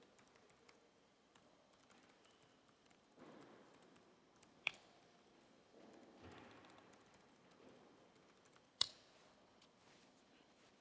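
Faint typing on a laptop keyboard, with two sharp clicks, about five and nine seconds in.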